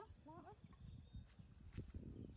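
A young macaque gives two quick, faint rising squeaks near the start. Faint knocks and a couple of light clicks follow as it climbs on a chain-link fence.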